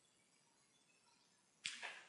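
Near silence in a quiet room, then about a second and a half in a short, sharp intake of breath with a lip click, just before speech.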